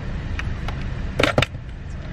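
Steady low rumble of a car's running engine heard inside the cabin, with a few faint ticks and one brief sharp noise a little past a second in.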